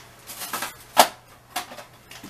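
Hand-handling of small plastic nail-art pens and their packaging on a table: a few light clicks and rustles, with one sharp click about a second in.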